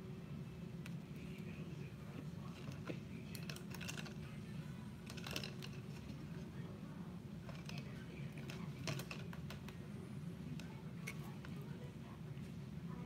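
Scattered light clicks and clatters of paintbrush handles knocking against a plastic cup as brushes are picked out, in small clusters a few seconds apart, over a steady low hum.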